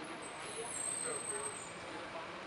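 Street ambience: a steady wash of traffic noise with faint, indistinct voices.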